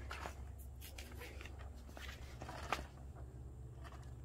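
A kick scooter rolling over an asphalt driveway and across a sheet of paper, with scattered footstep scuffs and clicks, the sharpest a little past the middle.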